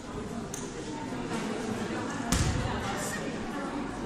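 One loud thump about two seconds in, a football hitting the gym floor, over background voices.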